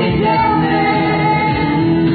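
A sung pop-ballad duet through handheld microphones with instrumental accompaniment, the voice holding long notes.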